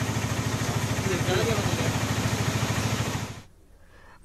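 A vehicle engine running steadily with a low even throb under a dense hiss, cutting off about three and a half seconds in.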